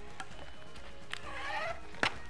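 Packing tape pulled from a handheld tape dispenser onto bubble wrap: a sharp click about a second in, then the tape peeling off the roll with a short rasp. Soft background music plays throughout.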